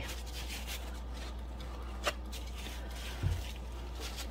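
Quiet handling of a plastic measuring jug and small plastic mixing cups: a sharp click about two seconds in and a soft low thud a little after three seconds, over a steady low hum.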